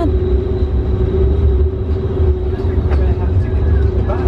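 Passenger ferry's engines running: a deep, steady rumble with a constant hum over it.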